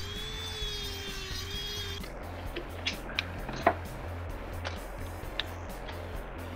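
Dremel rotary tool with a cutoff wheel whining steadily for about two seconds as it cuts a drone motor pod free, its pitch dipping slightly under load before it stops suddenly. A few light clicks of small parts being handled follow, over funk background music.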